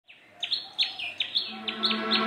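A bird chirping over and over, a few short, high, falling chirps a second. A low steady note comes in about three-quarters of the way through.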